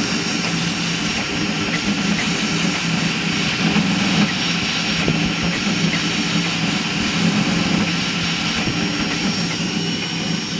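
Crossed-gantry 3D printer printing at high speed: the motors' buzz wavers constantly with the toolhead's rapid moves, over a steady rushing of the part-cooling blower fan.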